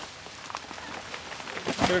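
Branches and leaves crackling and snapping under a wheel loader pushing through brush, with a sharper snap near the end.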